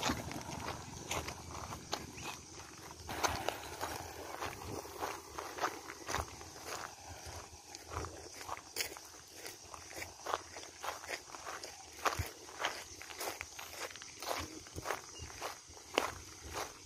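Footsteps crunching on a loose stony gravel bed at a steady walking pace.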